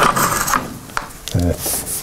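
Blackboard eraser rubbing chalk off a chalkboard in a few short scrubbing strokes.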